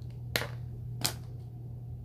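Two short, sharp plastic clicks, the second about 0.7 s after the first, as a clear plastic coin capsule is handled.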